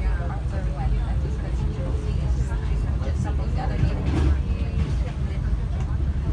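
Steady low rumble of a passenger train carriage running along the track, heard from inside the cabin, with passengers talking in the background.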